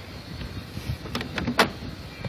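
Compact John Deere tractor's engine running at low revs while backing slowly in low reverse gear, with a few sharp clicks about a second and a half in.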